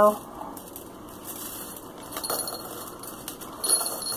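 Small hard candies tipped out of a bag into a glass shot glass, clinking and rattling against the glass, with scattered clicks that grow into a burst of clinks near the end.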